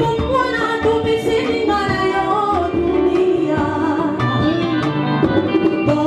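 A woman singing into a microphone, backed by a live band of drum kit and guitars playing a steady beat.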